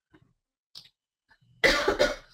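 A person coughing: one loud cough near the end, after a few faint breathing sounds.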